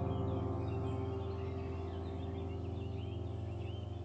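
Soft background music: a held piano-like chord slowly fading, with birds chirping high above it.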